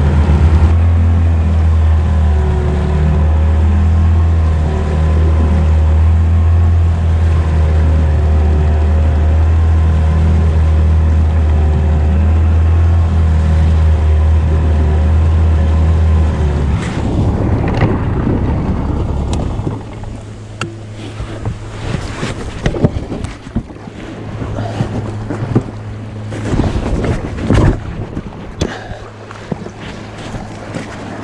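Outboard motor of an inflatable boat running steadily under way, then throttled back about two-thirds of the way through to a quieter idle as the boat runs onto the beach. Irregular knocks and splashes of shallow water follow.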